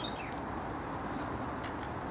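Domestic hens making soft, faint clucks and chirps as they forage, with a couple of light clicks about halfway through.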